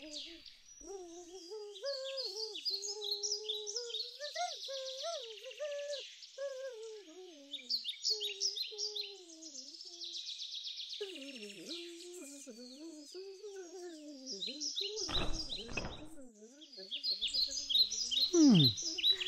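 A wandering hummed tune, the little golden creature's humming, over a steady bed of birdsong chirping. A brief low rustling burst comes about fifteen seconds in.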